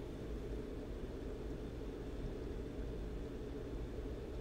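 Steady low rumble and hiss of background room noise, unchanging, with no distinct events.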